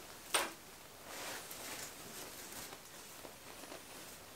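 A single sharp click a third of a second in, then faint, soft rustling as a plastic accessory bag is handled.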